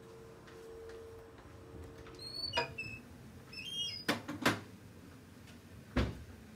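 A door being opened and let shut: two short high squeaks, then a few sharp knocks and clunks, the loudest about four and a half seconds in.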